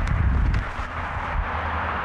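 Steady outdoor background noise with a low rumble: open-air ambience with no voice or music.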